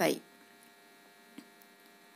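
Near silence with a faint, steady electrical hum, and one faint click about one and a half seconds in.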